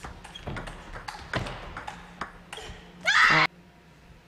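Table tennis rally: the ball clicking sharply off bats and table, about two to three hits a second. Then, about three seconds in, a short loud shout rising in pitch as the point is won, which cuts off suddenly.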